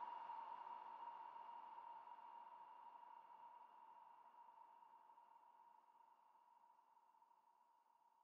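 The last tail of a progressive psytrance track fading out: one faint, steady synth tone with a soft hiss under it, dying away steadily toward silence.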